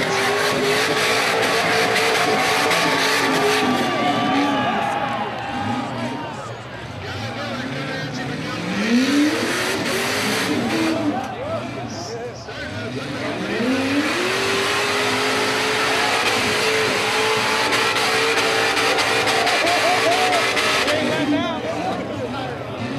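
Rock bouncer buggy's engine held at high revs as it climbs a steep rock face. The revs fall away around six seconds in and climb steeply again around eight seconds and thirteen seconds in.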